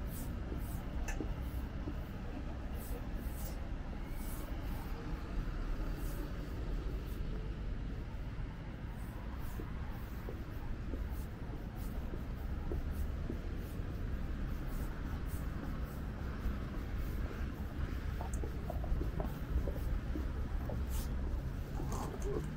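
City street ambience: a steady low rumble of passing car traffic at a busy intersection, with a faint murmur of pedestrians' voices.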